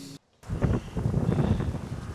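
Wind buffeting an outdoor microphone: an uneven, rumbling rush of noise that starts about half a second in, after a brief cut to silence.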